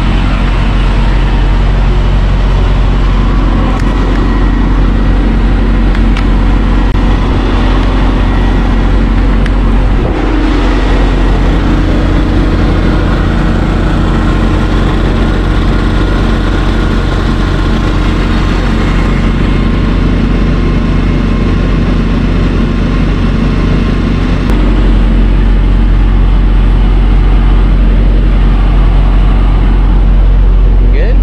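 Steady drone of idling engines with a continuous low hum. The sound changes abruptly about ten seconds in and again about 24 seconds in, where it gets louder and the low hum stronger.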